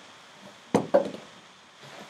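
Two short, sharp knocks about a fifth of a second apart, not long after the start, against quiet room tone.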